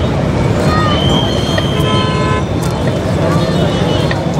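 Crowd chatter over steady road traffic noise, with a vehicle horn sounding for a second or so around the middle.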